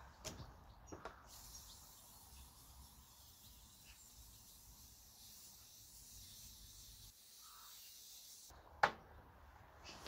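Aerosol can of STP engine degreaser hissing as it is sprayed over an engine, a steady faint hiss that starts about a second in and cuts off abruptly near the end.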